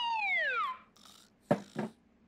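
Cartoon falling sound effect: a long whistle-like tone sliding steadily down in pitch, which dies away within the first second. About a second later come two quick thumps, a fraction of a second apart.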